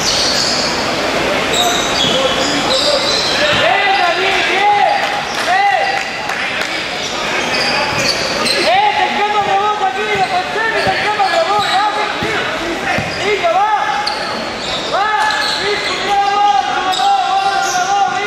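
Basketball being played in an echoing hall: sneakers squeak on the court again and again in short, arching chirps, with the ball bouncing and voices calling out.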